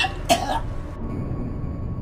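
A man coughs once, sharply, about a third of a second in. A dark, low music bed runs underneath.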